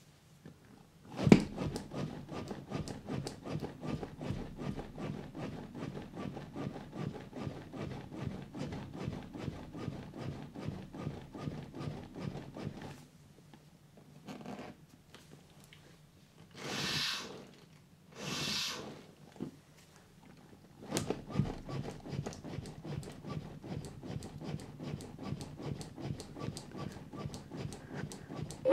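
Chest compressions on a CPR training manikin: the plastic chest clicking and rubbing under the hands in a fast, steady rhythm. Midway it stops for two short rushes of air as two rescue breaths are blown into the manikin, then compressions start again.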